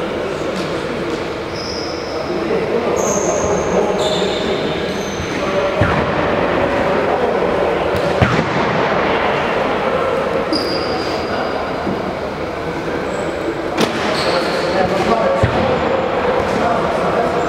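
Indistinct voices of players talking and calling in a reverberant sports hall, with a few ball thuds and short high squeaks scattered through, typical of sneakers on a wooden court.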